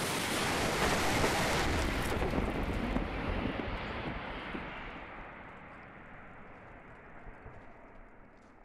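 A loud rushing rumble that sets in suddenly and dies away gradually over several seconds, its hiss thinning out first.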